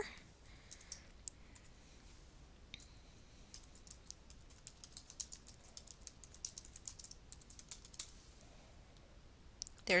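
Faint typing on a computer keyboard: a few scattered key clicks, then a quick, steady run of keystrokes from about three and a half to eight seconds in.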